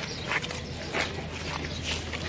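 Outdoor ambience of a walking procession: a low steady hum with three short, sharp sounds about half a second, one second and two seconds in.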